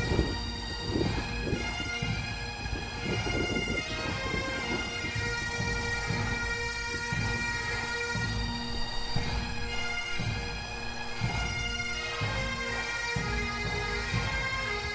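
Scottish bagpipe music: a steady drone held under a skirling melody line, with a low rumble of noise beneath it.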